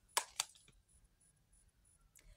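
Two quick, sharp snaps of oracle cards being handled in the hands, a fraction of a second apart, followed by a few faint ticks.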